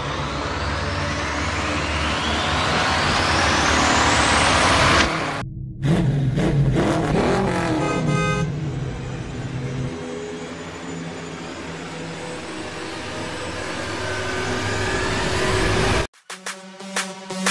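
Car engine sound effect. A rising whoosh builds for about five seconds and breaks off. Then an engine revs, falls away and settles into a steady running sound that swells again near the end.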